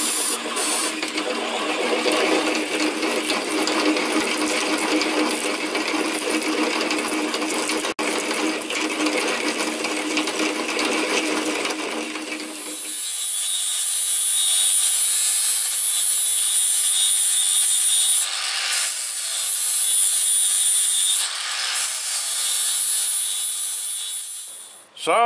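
Drill press drilling through a metal block, with short hisses of cutting-fluid spray near the start. About halfway through it gives way to an angle grinder grinding metal: a high steady whine, broken twice by short drops.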